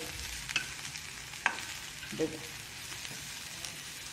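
Bitter gourd slices sizzling in hot oil in a non-stick pan while a spatula stirs them, with two sharp scrapes or taps of the spatula on the pan early on.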